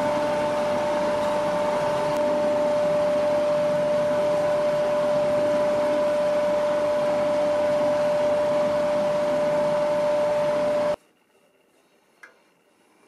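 Wood lathe running steadily: an even machine hum with a constant whine over a hiss. It cuts off abruptly about eleven seconds in.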